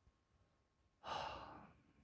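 A single sigh: one breath let out about a second in, strongest at its start and fading away over most of a second.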